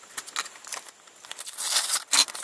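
Scissors snipping through a paper mailing envelope in a series of short crisp cuts, then paper rustling louder near the end as the envelope is opened.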